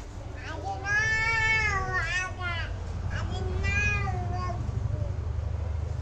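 A cat meowing twice, in long drawn-out calls that rise and fall in pitch, over a steady low rumble.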